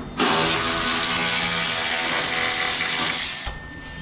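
A handheld power tool runs steadily for about three seconds, then cuts off abruptly.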